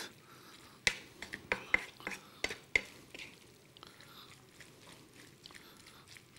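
A wooden spatula stirring chard and chicken in a frying pan: a string of light knocks and scrapes against the pan during the first three seconds, then only faint stirring.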